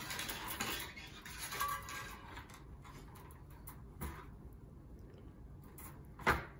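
Bonsai wire being pulled off its coil and handled: a faint, scratchy rubbing of metal wire that dies down after about two and a half seconds, with a single click about four seconds in.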